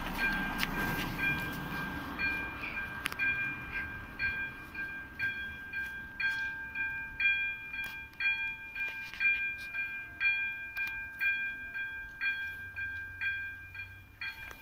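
AŽD 97 level-crossing warning signal's electronic bell ringing, a steady high tone with a ding repeating about once a second, which means a train is approaching. A car passes over the crossing in the first couple of seconds.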